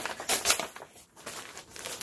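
Thin plastic bag crinkling as it is handled and lifted out of a package: a quick run of crinkles, loudest in the first half second, then fainter.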